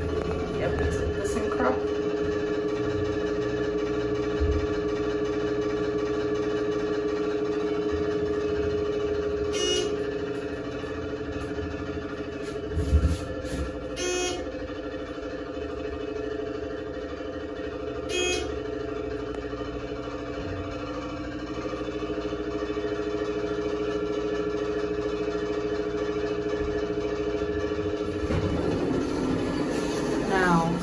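A steady hum of several held tones inside a moving elevator car, lasting most of the ride and stopping a couple of seconds before the end, with three brief clicks around the middle.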